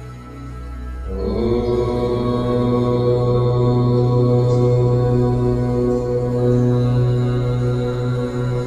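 A long chanted Om in a low male voice, starting about a second in and held on one steady pitch over soft new-age background music.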